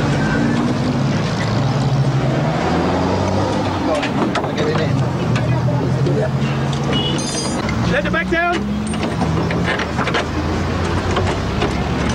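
A motor runs steadily with a low hum, under shouting voices and a few short metallic knocks of work on the car.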